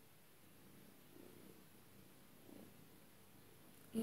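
Near silence with a faint, low purring of a domestic cat close by.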